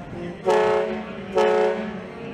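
Two blasts of a riverboat's horn, each about half a second long and about a second apart.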